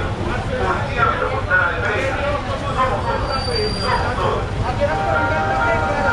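Voices speaking over the low rumble of street traffic. From about five seconds in, a steady held tone of several notes at once joins them.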